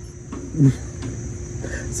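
A steady, faint high-pitched chirring of insects, with one short low voice-like sound about half a second in.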